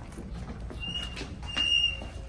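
Footsteps walking into a shop, with two short high-pitched tones about a second in, the second one longer and louder.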